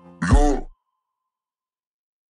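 The last sound of a pop song: a short vocal note falling in pitch, stopping abruptly about three-quarters of a second in, then dead silence between tracks.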